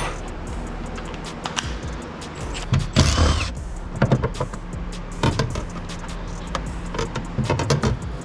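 Clicks, knocks and handling noises from a plastic fuel-pump access cover being lifted off its opening in the floor under the rear seat, with a louder scraping rush about three seconds in. Background music plays underneath.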